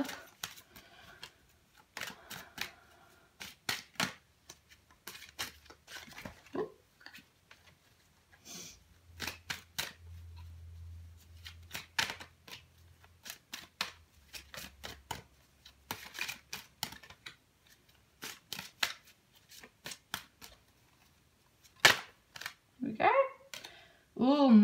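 A deck of oracle cards being shuffled and handled by hand: irregular sharp clicks and flicks of card stock, scattered unevenly.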